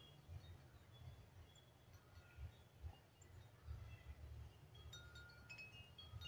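Near silence: faint, scattered high ringing tones like wind chimes, over a low rumble.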